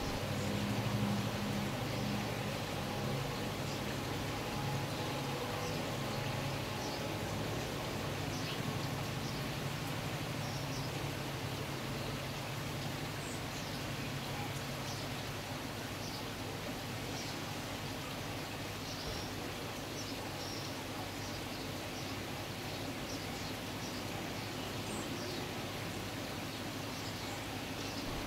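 Steady background noise with a low hum that fades about halfway through, and scattered faint, short, high ticks or chirps.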